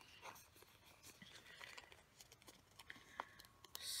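Faint rustling and light ticks of a paper sticker sheet being handled and shifted over a planner page, with a brief louder rustle near the end.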